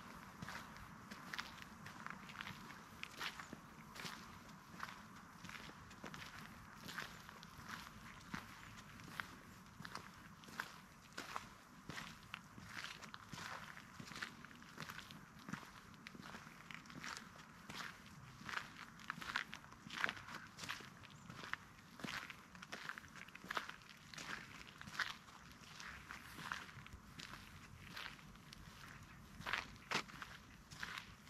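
Footsteps of a person walking on a sandy dirt path, at a steady pace of about two steps a second.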